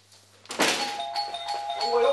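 Doorbell ringing: a sudden start about half a second in, then a steady two-tone chime held for over a second.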